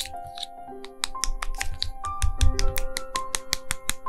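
Background music with held piano-like notes, over a quick run of sharp clicks and scrapes from a metal palette knife working thick jelly gouache against the sides of a small plastic paint pan.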